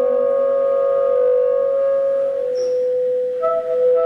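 Baritone and tenor saxophones holding long, sustained notes together in a free jazz duet. A lower note fades out under a second in, and a new note enters about three and a half seconds in while the main note keeps sounding.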